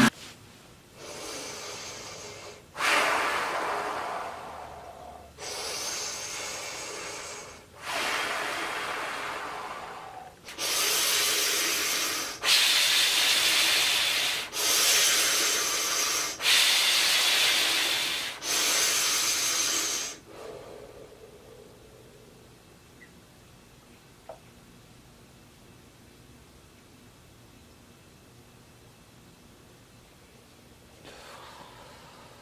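Deep, forceful Wim Hof method breathing: about nine long breaths of roughly two seconds each, louder and closer together from about halfway in. The breathing then stops for the last ten seconds.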